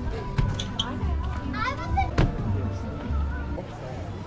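Children's high, gliding squeals and voices over background music.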